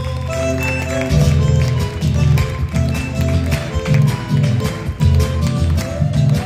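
Live Argentine folk ensemble playing an instrumental passage of a chacarera: acoustic guitar, bandoneon and drum. Held melodic notes open the passage, and a strong low drum beat comes in about a second in and keeps a steady rhythm.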